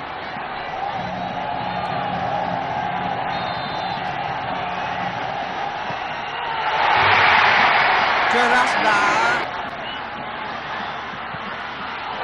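Stadium crowd noise during a football penalty shootout, swelling suddenly into a loud outburst about six and a half seconds in as the penalty is struck and goes in, then falling back after about three seconds.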